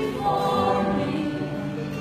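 Live acoustic performance: a woman singing into a microphone over two acoustic guitars, with long held notes.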